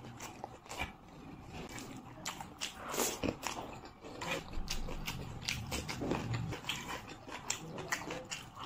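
Close-miked eating sounds: a person chewing a mouthful of rice and curry with irregular wet smacks and clicks, along with fingers squishing and mixing the rice and curry on the plate.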